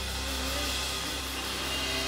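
A live worship band plays an instrumental passage between sung lines. Steady low bass notes sit under a sustained wash of keyboards and cymbals, with no singing.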